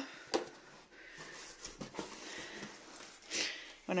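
A cardboard parcel being opened by hand: a light knock just after the start, faint scraping and rustling of the cardboard, and a short louder rustle of the flaps near the end.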